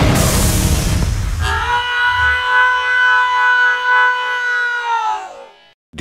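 Cartoon explosion sound effect: a loud burst of noise for about the first second and a half, followed by a held musical chord with a slight wobble that fades out shortly before the end.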